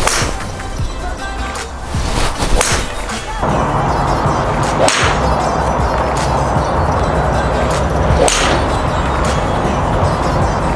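TaylorMade M1 3-wood striking teed-up TaylorMade TP5 golf balls: four sharp, powerful, loud strikes a few seconds apart.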